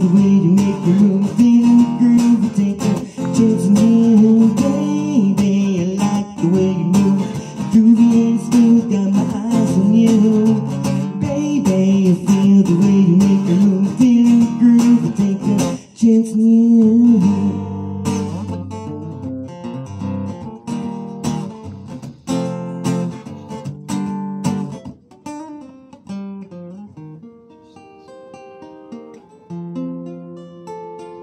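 Acoustic guitar played with a man singing over it for roughly the first half. The song then winds down to the guitar alone, softer and sparser, with single plucked notes fading out near the end.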